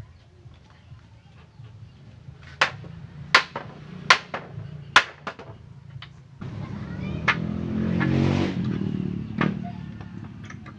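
Hammer blows on a wooden frame as it is nailed together: four sharp strikes under a second apart, then a few more. In the second half a passing motor vehicle swells up and fades away, louder than the hammering.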